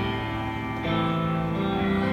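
A live band plays held chords between sung lines, with no voice. The chord changes about a second in.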